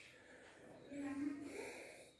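A man's faint breath and a brief low hum about a second in, with nothing else heard before it.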